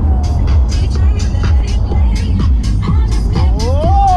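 Music from a car stereo with a heavy bass beat and quick, regular hi-hat ticks, heard inside the moving car's cabin. A tone glides upward near the end.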